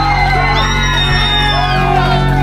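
Live rock band playing loudly, with bass and electric guitar holding a sustained chord. Voices shout and whoop over it.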